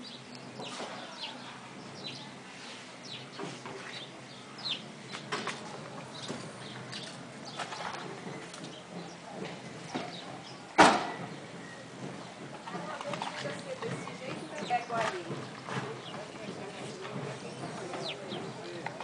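Outdoor backyard ambience: scattered short bird chirps and calls, faint distant voices, and one sharp knock about eleven seconds in.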